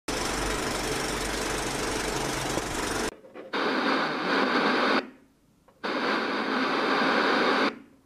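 Intro sound effects: about three seconds of crackly old-film noise with a low hum, then two bursts of TV static hiss, each under two seconds long, with short quiet gaps between.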